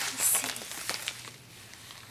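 Paper and plastic packaging rustling as it is handled, with a short crinkle near the start and a few light clicks about a second in, then only faint handling noise.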